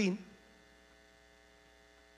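A man's word ends in the first moment, then a faint, steady electrical mains hum runs on in the microphone and sound system.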